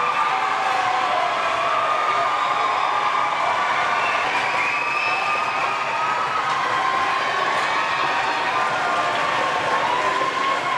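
Arena crowd cheering and shouting, steady throughout, with drawn-out wavering voices rising and falling above the general noise.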